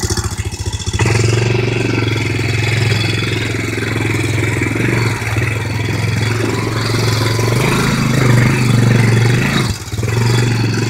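ATV engine running as the quad is ridden over rough woodland ground; about a second in the throttle opens and the engine note rises and holds steady, dipping briefly just before the end.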